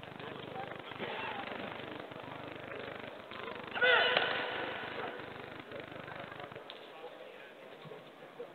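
A single loud, high-pitched shout about four seconds in, as the two karate fighters clash, over a steady background of arena chatter.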